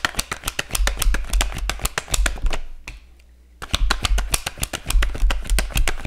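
Tarot cards being shuffled by hand in a rapid run of papery clicks. They stop briefly about three seconds in, then start again.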